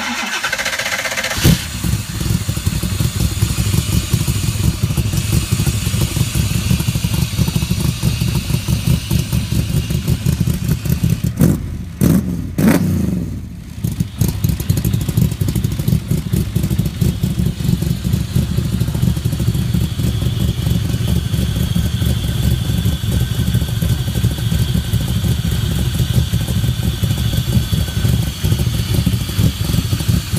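Roush 427R V8 in a Cobra replica cold-started on Holley fuel injection without touching the throttle, exhausting through side pipes: the starter cranks for about a second and a half, the engine catches, and it settles into a steady, loud cold idle. The sound dips briefly about halfway through, then carries on steadily.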